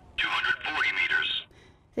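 Synthesized voice alert from the Boomerang III shot-detection system's small loudspeaker, continuing its "Shot" call-out with the detected shooter's position. It sounds thin and tinny and lasts a little over a second.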